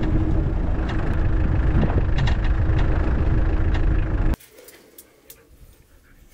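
Land Rover Defender driving on a dirt track: a loud, steady low rumble of engine and road noise, picked up from outside on the bonnet. About four seconds in it cuts off abruptly to a quiet background with a few faint clicks.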